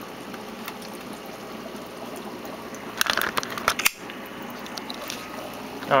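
Steady bubbling and water noise from air bubbling out of an algae scrubber's air tubing in a saltwater pond. About three seconds in there is a short run of clicks and rustles from the camera being handled.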